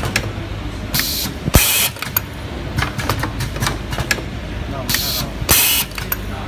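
Automatic Type-C USB cable soldering machine running: a steady machine hum with frequent small mechanical clicks. Twice, about four seconds apart, comes a pair of short, loud compressed-air hisses from its pneumatic cylinders and valves.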